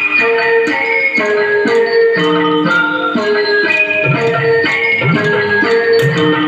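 Dandiya dance music: a keyboard melody in held notes over a steady drum beat of about two strokes a second.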